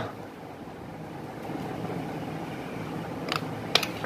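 Small plastic clicks near the end as the snap-fit casing of a wireless doorbell unit is pried open by hand, over a steady room hum.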